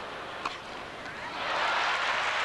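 Arena crowd noise, with one sharp tennis-racket strike on the ball about half a second in, then applause swelling from about a second and a half in as the point ends.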